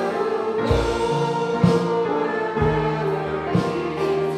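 A congregation sings a hymn, accompanied by a band with a drum kit. A low drum beat and cymbal hits fall about every two seconds.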